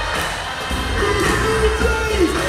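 Live music played through a concert PA, with a heavy bass and a long held vocal note in the second half.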